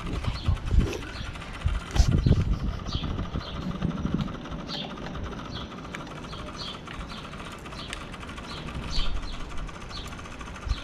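Hands handling an RC receiver and its wires: irregular knocks and rustles, loudest in the first few seconds, then quieter. Short high chirps are scattered through.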